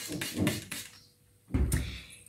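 Hand trigger-spray bottle squirting a few quick hissing bursts onto a potted succulent, dying away within the first second. A dull low thump about one and a half seconds in, as the bottle and pot are handled.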